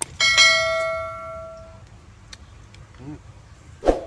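A mouse click followed by a single bright bell ding, the notification-bell sound effect of a subscribe-button animation, ringing out and fading over about a second and a half.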